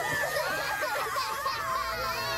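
Several cartoon characters' voices wailing and sobbing together, overlapping high cries that waver up and down in pitch.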